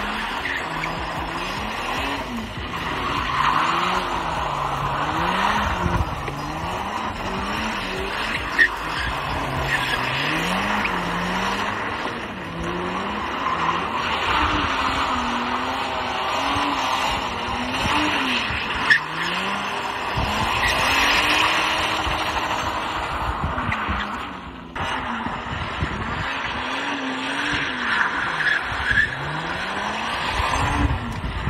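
Drift car's engine revving up and down over and over as the throttle is worked through repeated slides, with tyres squealing and scrubbing on the tarmac. Two short sharp clicks stand out, about a third and two thirds of the way through.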